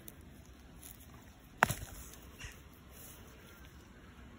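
Carrot being pulled by hand from garden soil: faint rustling, with one sharp snap about a second and a half in and a smaller click a little later, as the carrot root breaks.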